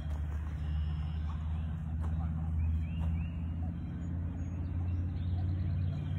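A steady, low rumble of a motor vehicle engine running nearby, with a few faint chirps about halfway through.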